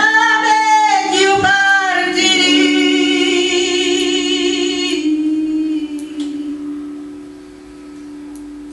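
A woman sings a traditional Sicilian song into a microphone over piano accompaniment. She ends the phrase on a long note with vibrato that stops about five seconds in, leaving the piano's held chord fading.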